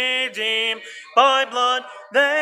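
Unaccompanied hymn singing led by a man's voice: a run of held notes, each sung on a steady pitch, with a short pause about a second in.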